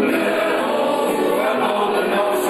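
Amateur choir singing a Dutch song in a swinging reggae arrangement, with one man's voice close on a handheld microphone. The recording is a rough phone recording.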